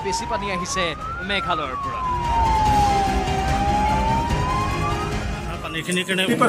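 An emergency vehicle's wail siren, sweeping slowly up in pitch, then down over about two seconds, then up again, with a low rumble beneath. Brief voices are heard in the first second or so.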